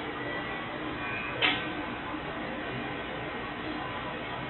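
Bryant 912SE furnace's blower running steadily in cooling mode, a constant rush of air through the unit and ductwork, with one brief soft tap about a second and a half in.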